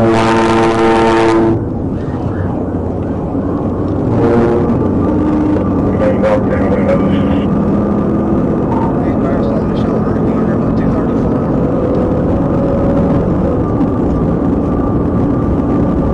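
Police car horn sounding over the cruiser's road and wind drone: one long blast of about a second and a half, then a shorter one about four seconds in, while the car accelerates hard past traffic in pursuit.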